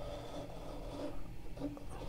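A compass's pencil faintly scratching on paper as it is swung round to draw a circle.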